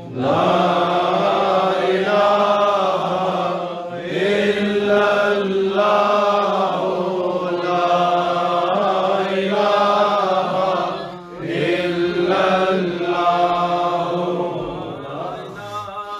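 Men's voices chanting zikr, the Islamic remembrance of God, in long held melodic phrases that break off briefly every few seconds.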